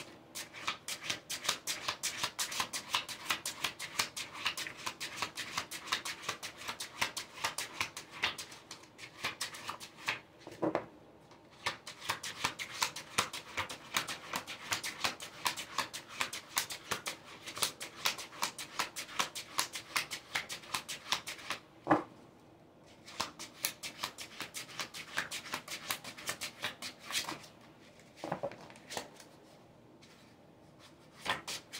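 A deck of tarot cards being shuffled by hand, a fast run of crisp card slaps and rustles, with a few short breaks, one about eleven seconds in, one about twenty-two seconds in and one near the end.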